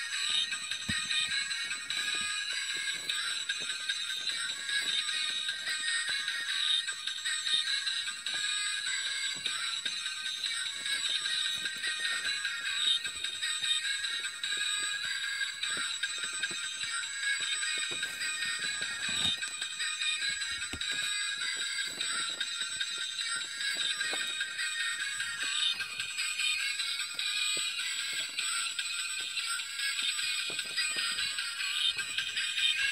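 Miracle Bumping Car toy truck's small built-in speaker playing a loud electronic tune with a synthetic singing voice, thin and tinny with almost no bass.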